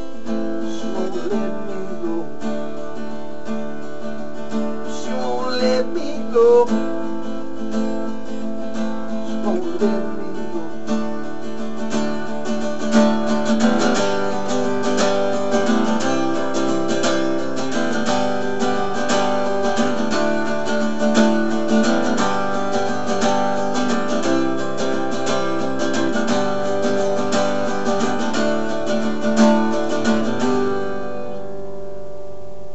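Solo acoustic guitar playing an instrumental passage: slower picked notes with a few sliding pitches at first, then steady, busier strumming from a little before halfway.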